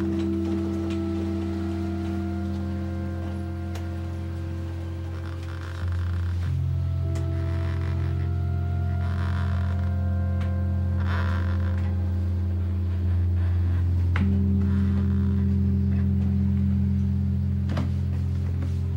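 Background film music of sustained low chords, the held notes shifting every few seconds and growing a little louder about six seconds in and again near thirteen seconds.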